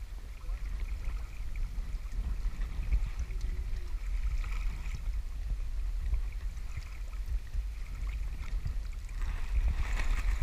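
Wind rumbling on the microphone over the steady rush of river current around a wading angler's legs; the water sound brightens and grows louder near the end.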